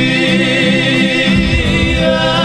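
A duo singing a long held note with vibrato over two strummed acoustic guitars.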